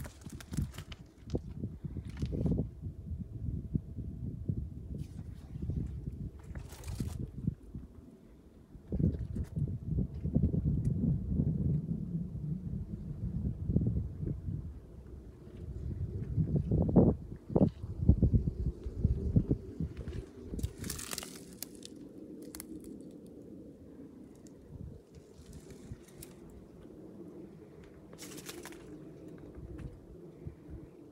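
Footsteps and the low, uneven rumble of a handheld camera being carried while walking, with scattered knocks and brief rustles. After about twenty seconds the walking stops and a faint steady hum remains.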